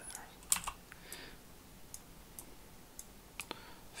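A few scattered, faint clicks of a computer keyboard and mouse, a pair near the start and more in the last second or so.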